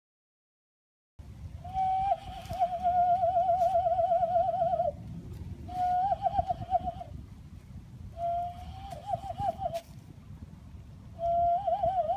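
Cupped-hand whistle blown through clasped hands: a wavering, trilling tone in four bouts, the first about three seconds long and the others a second or two each, after about a second of silence.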